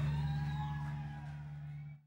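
A steady low droning note from the band's amplified sound, ringing out and fading, then cutting off abruptly at the end.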